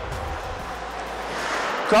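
Ice skate blades scraping and carving the ice as a skater strides through crossovers, a hiss that grows louder near the end.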